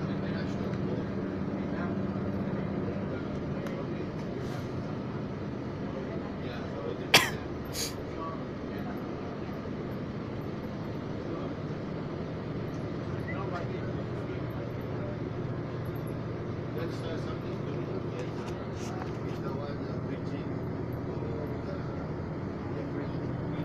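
Bus running along a road, heard from inside the cabin: a steady engine and road hum whose pitch shifts as it drives, with one sharp click about a third of the way in.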